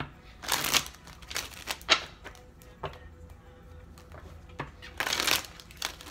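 A deck of tarot cards being shuffled by hand: several short rustling bursts with a few light clicks, the loudest about five seconds in.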